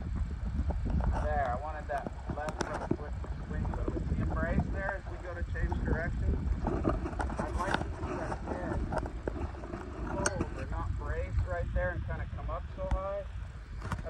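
A man's voice talking, too faint or unclear to be written down, over steady wind rumble on the microphone.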